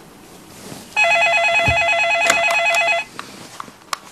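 Landline telephone ringing with a rapid electronic warble: one ring lasting about two seconds. It is followed by a few short clicks as the handset is picked up.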